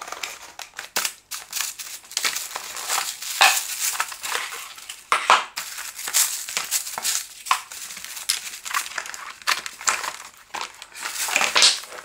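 Packing wrap and cardboard rustling and crinkling as a keyboard and mouse are unpacked from their box, with scattered light clicks and knocks.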